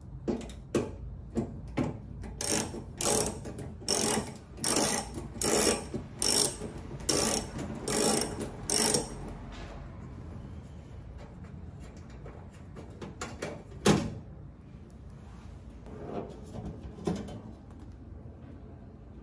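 Hand ratcheting screwdriver clicking through short back-and-forth strokes as it backs out tailgate panel screws, about two strokes a second for roughly nine seconds. A single sharp knock comes about fourteen seconds in, with softer handling sounds after it.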